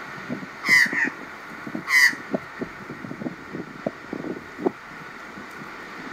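Australian magpies giving harsh alarm calls, two loud ones about one and two seconds in, with fainter, lower sounds in between: the birds are agitated by a red-bellied black snake close by.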